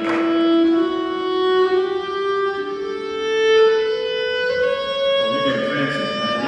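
Violin played with the bow in long held notes that climb slowly in pitch, one step at a time.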